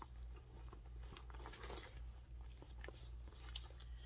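Faint rustling and small scattered clicks of hands handling a leather shoulder bag and the small items packed inside it, over a low steady hum.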